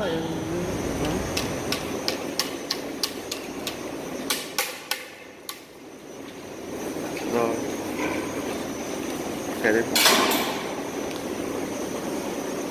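Quick clicks and knocks, about four a second at first, then scattered, as a heavily pregnant sow walks over a slatted floor and steps into a metal farrowing crate. Near the end there are two brief voice-like sounds and a short harsh burst of noise.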